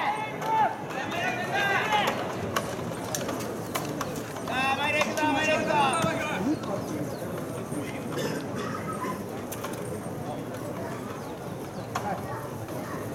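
Distant shouted voices carrying across a baseball field, in two bursts: one at the start and one about five seconds in, over steady outdoor background.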